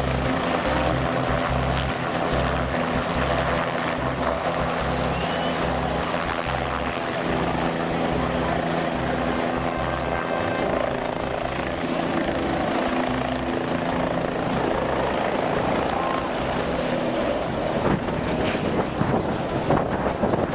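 Helicopter running with its main rotor turning, lifting off and climbing away, its rotor beating in a steady, even pulse.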